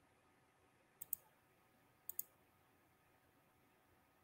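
Two quick double clicks of a computer mouse, about a second apart, against near silence.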